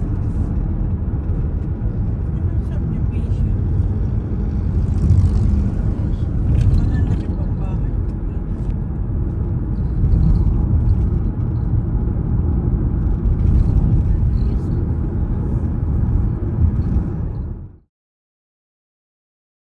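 Steady low rumble of road and wind noise from a moving car, which cuts off suddenly just before the end.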